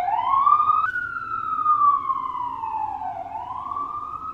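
Really loud emergency vehicle siren wailing, its pitch sweeping slowly up and down: a short rise, a long fall lasting about two seconds, then a rise again near the end.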